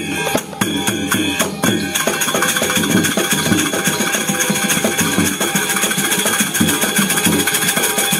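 Balinese kendang drums playing fast with metal percussion over ringing pitched tones, as gamelan accompaniment for a Barong dance. The strokes come sparser at first, then run on as a continuous rapid beat from about two seconds in.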